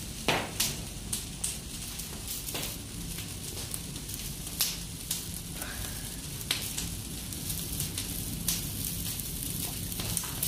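Fire of damp cypress branches crackling and hissing, with irregular sharp pops every second or two.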